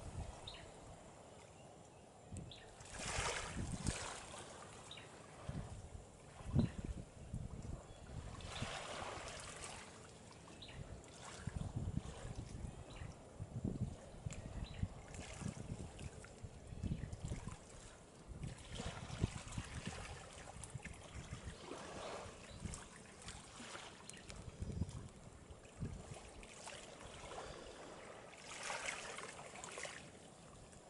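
Small waves washing in at the shore, their noise swelling and fading every several seconds over an irregular low rumbling.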